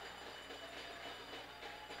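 Faint steady background noise: a low hum with a few thin, steady high tones and no distinct events.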